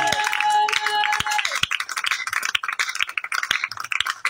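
A small group of people clapping their hands, with a held note that stops about a second and a half in.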